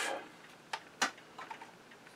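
A few light clicks of a screwdriver working the needle clamp screw on an old Singer sewing machine's needle bar. The sharpest click comes about a second in.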